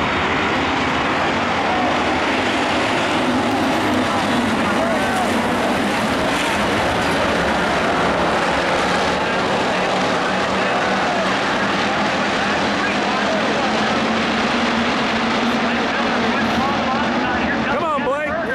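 A field of IMCA Hobby Stock race cars running together on a dirt oval, their engines blending into one steady drone with faint rises and falls in pitch.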